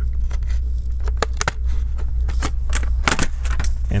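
The plastic retaining clips of an MSI PS63 Modern laptop's bottom cover clicking and snapping loose one after another, at irregular intervals, as a thin pry tool is worked along the edge from a corner, with some scraping between the snaps.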